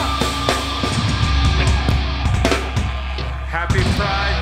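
Live band playing loud, heavy music with distorted electric guitars, bass and drum kit hits. Near the end a pitched sound slides upward.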